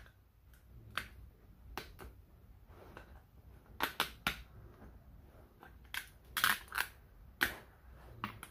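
Cutting pliers snapping and ripping small brass contacts off plastic stove switch housings: a series of irregular sharp clicks and snaps, bunched about four seconds in and again between six and seven and a half seconds.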